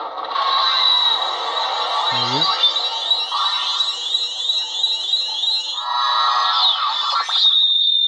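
Xenopixel lightsaber sound board playing through the saber's built-in speaker: a loud, crackling electric hum of the lit blade with a high steady whine, broken in the middle by a fast run of repeating sweeps. Near the end a falling retraction sound as the blade switches off.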